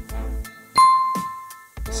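A single bright bell 'ding' notification sound effect about three quarters of a second in, ringing out and fading over about a second. It sounds over background music with a steady bass beat, which drops out around the ding and returns near the end.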